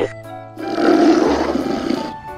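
Background music with steady notes, then about half a second in a loud, rough roar sound effect standing in for a Dimetrodon's call, which stops near the end.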